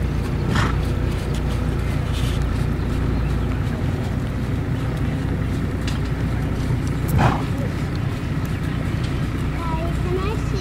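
Indistinct background voices of people talking over a steady low rumble, with a brief louder sound about half a second in and another about seven seconds in.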